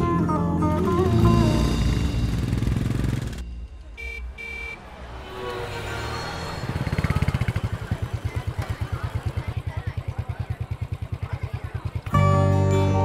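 A background song ends about three seconds in; then street traffic with two short horn beeps, and from about halfway a motorcycle engine idling with a steady pulsing beat, about eight pulses a second.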